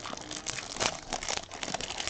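Plastic trading-card packaging crinkling as it is handled: a quick, irregular run of small crackles and clicks.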